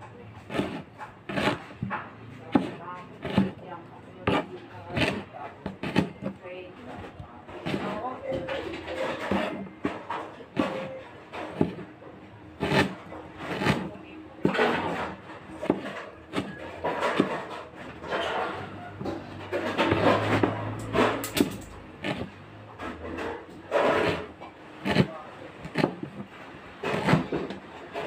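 Cleaver chopping ginger on a plastic cutting board, knocking against the board roughly once or twice a second with short pauses between runs of cuts.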